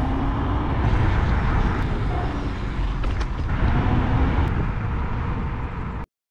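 Wind rumble and road noise picked up by a GoPro Hero 8 Black's built-in microphone while riding on a moving vehicle: a loud, steady, low roar.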